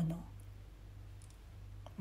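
Quiet room tone with a steady low electrical hum, after a word that trails off at the start; a single faint short click just before the end.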